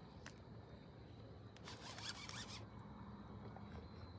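A fishing reel clicking rapidly for about a second, midway, while a heavy fish is fought on a bent rod, with a single click just before.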